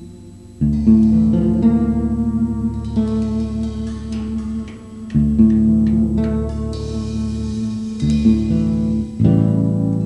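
Live band with electric guitars and bass playing held chords over a deep bass line. The chords change every few seconds, after a brief quieter moment at the start.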